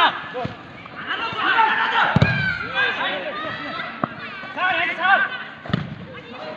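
Voices calling out over a football match, with four sharp thuds of the ball being kicked on the dirt pitch; the loudest comes about two seconds in.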